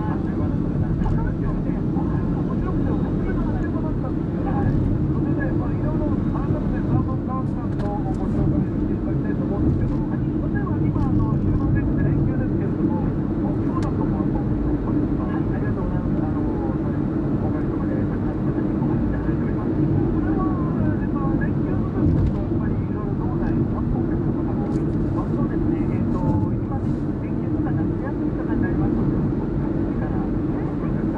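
Steady road and engine noise inside a moving car's cabin, with a car radio playing faintly underneath.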